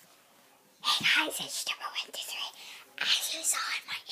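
A young girl whispering, starting about a second in.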